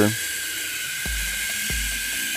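The battery-powered electric motor and gear train of a 1975 Mego Action Stallion toy horse are running, walking its legs. It makes a loud, steady, high whirring whine, with a few clicks and two low knocks as the legs step. It is noisy but working properly, with no electrical faults.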